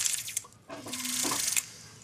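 A jeweller's rotary handpiece spinning a split mandrel wrapped in 400-grit sandpaper against the inside edge of a metal ring, making a hissy scratching sanding noise that dies away about half a second in. A second, quieter burst of about a second follows, with a steady low hum under it.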